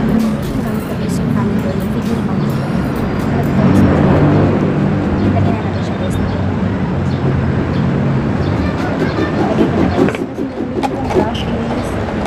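A woman talking, with a steady rumble of road traffic behind her.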